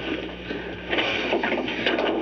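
Irregular rustling and scraping of people clambering down, with a few short knocks, growing louder about a second in.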